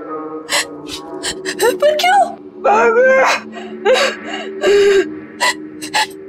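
A frightened woman gasping and whimpering in short, broken breaths, over a steady held drone of background music.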